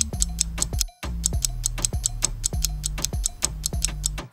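Quiz countdown-timer sound effect: clock-like ticking, about four ticks a second, over a repeating low beat, cutting out briefly about a second in.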